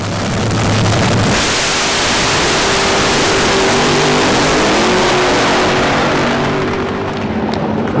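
Nitro-burning funny car engine at full throttle on a drag-strip launch. It builds to a loud, harsh full-power note within about a second, holds it for several seconds as the car runs down the track, then eases off near the end.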